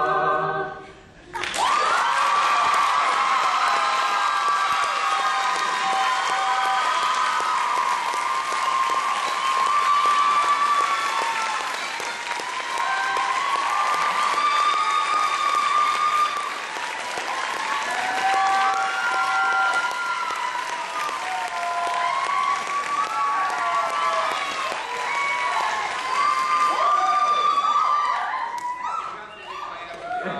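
An audience applauding and cheering loudly after an a cappella performance, with whoops and shouts over the clapping. It starts about a second and a half in, after a brief hush as the last sung note ends.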